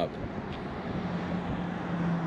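Outdoor background noise of distant road traffic, steady and without separate events. A low steady hum comes in about halfway through.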